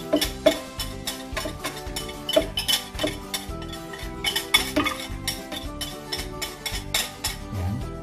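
Wire whisk scraping and clicking against a glass bowl as a sticky egg-white and sugar mixture is scraped out into a steel mixer bowl, over background music with sustained tones.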